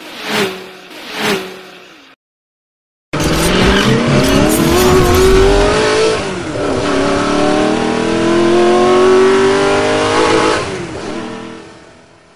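Sound effect of a car engine revving hard: its pitch climbs, drops for a moment about six seconds in like a gear change, then climbs again before fading out near the end. It starts after two rhythmic pulses and a second of silence.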